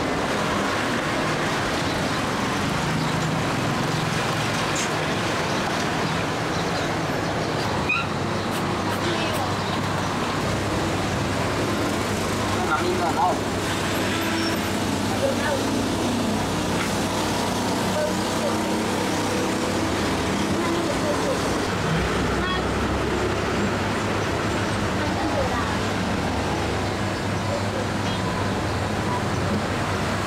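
Steady street ambience: traffic noise with voices in the background.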